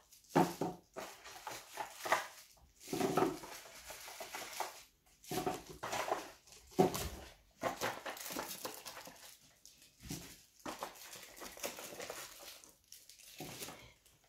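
Cardboard box and crumpled packing paper rustling and scraping in irregular bursts as items are lifted out of a parcel.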